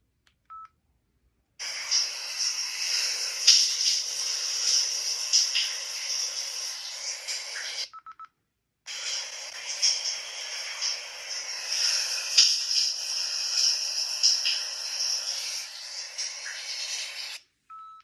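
A digital voice recorder playing back an EVP recording through its small speaker: a short electronic beep, about six seconds of hiss, another beep, then about eight seconds more hiss, and a last beep at the end. The recording is one in which the owner hears her late father's voice saying her name.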